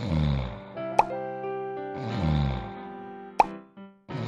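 Cartoon snoring sound effect from a sleeping dinosaur: two long snores, each falling steeply in pitch, about two seconds apart. Between them come sharp plinking pops, one about a second in and one near the end, over soft background music.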